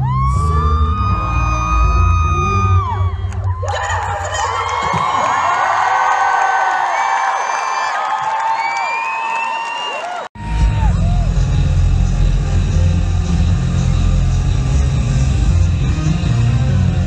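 Live arena pop concert: a female singer holds a long note over amplified band music with a heavy beat. About 3.5 s in the beat drops out and the crowd cheers and screams over sustained vocals. About 10 s in the sound cuts out for an instant, and loud band music with a heavy beat comes back.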